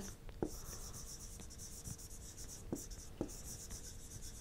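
Faint scratching of a stylus writing on a pen tablet, with a few light ticks of the pen tip and a faint steady hum underneath.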